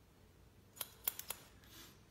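Hairdressing scissors snipping through wet hair: four quick snips close together in the second half.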